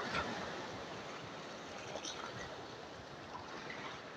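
Small sea waves washing over a rocky shore, with a steady wash of foaming water that slowly fades.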